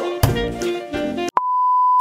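Background music with a beat that cuts off suddenly, followed by a steady, single-pitch electronic beep held for about half a second.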